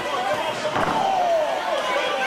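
A single thud on the wrestling ring about a second in, as a wrestler comes down onto the mat. A voice calls out at the same moment with a drawn-out, falling shout.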